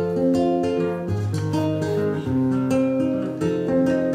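Live band playing an instrumental passage: an acoustic guitar picking a melody over a low electric bass line.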